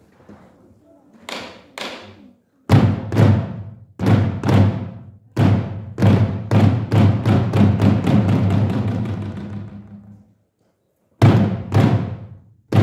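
Korean samul nori percussion ensemble of kkwaenggwari, jing, janggu and buk playing Utdari-style rhythms together. After two light opening strokes, the group hits loud unison strokes that quicken into a fast roll and die away, then falls silent briefly before starting again near the end.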